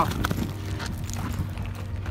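Footsteps crunching irregularly on loose rock and gravel as someone scrambles up a steep rocky slope.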